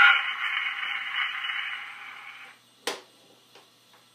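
A cylinder phonograph playing through its horn: the recorded voice says a last word. The cylinder's surface hiss runs on and fades out over about two seconds. A single sharp click follows, then a few faint ticks, as the machine is handled.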